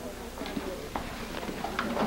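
Several light clicks or knocks spaced irregularly, over a low background murmur with faint indistinct voices.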